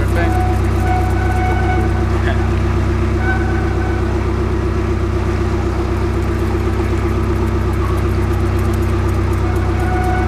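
Narrowboat's engine running steadily under way, a low, even sound that does not change.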